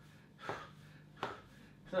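A man's short, sharp breaths from exertion during high-knee exercise: two quick exhalations, about half a second and just over a second in.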